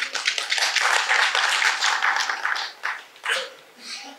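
Audience applauding: many hands clapping together, fading to a few last claps about three seconds in.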